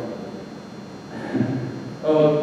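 A pause in a young man's speech into a microphone: room tone, with one brief soft vocal sound, like a hesitation, about a second and a half in.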